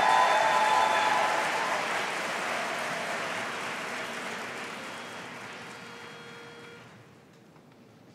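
Audience applauding, loudest at the start and dying away over about seven seconds.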